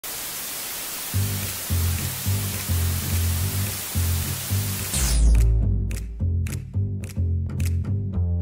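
Television static hiss with a repeating bass line coming in about a second in; the static cuts off suddenly about five seconds in on a deep low note, leaving the bass music with sharp drum hits.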